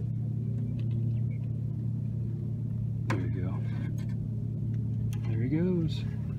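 A boat motor runs with a steady low hum. Brief wordless voice sounds come about three seconds in and again near the end.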